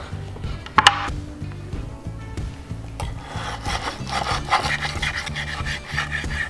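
Table knife and fork sawing through the crisp breaded crust of a chicken fried steak on a wooden cutting board: a rasping scrape that picks up about halfway through, after a single sharp knock a little under a second in.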